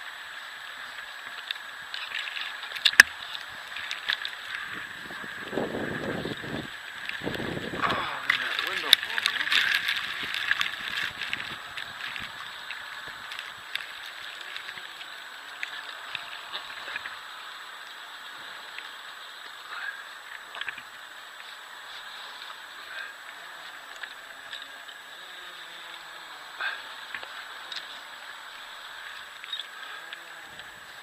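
Rope, climbing gear and fir branches rustling and clicking close to the microphone as a tree climber moves on his line, busiest in the first dozen seconds, with two louder low rushes about six and eight seconds in. A steady hiss with a thin high whine sits underneath.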